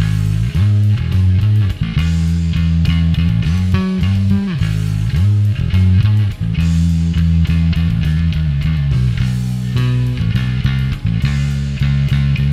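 Electric bass guitar, a Squier Precision Bass, played through a Joyo Double Thruster bass overdrive set to high gain with low blend. It plays a riff of sustained, distorted notes that change pitch every second or so.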